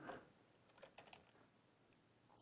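A few faint keystrokes on a computer keyboard, around a second in, over near silence.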